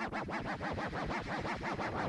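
DJ scratching on a Serato-controlled turntable, cutting a sample into fast, even repeats of about ten a second over electronic music.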